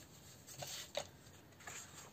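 Faint rustling of sheets of 180 g scrapbooking paper being lifted and slid over one another by hand, with two brief soft rustles about halfway through.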